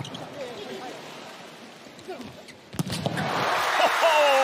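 A volleyball spiked hard: one sharp ball strike about three-quarters of the way in, after a low crowd murmur, and then the arena crowd cheering loudly.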